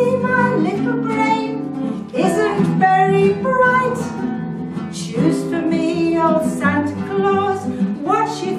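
A woman singing a folk Christmas song to acoustic guitar accompaniment.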